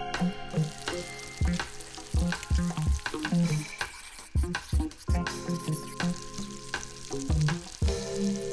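Chopped food sizzling in a frying pan while being stirred, the sizzle starting about half a second in, over background music with a steady drum beat and bass.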